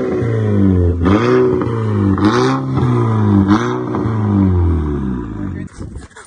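Audi TT's engine revved repeatedly while parked, the pitch climbing and falling back with each blip of the throttle. The sound drops away near the end.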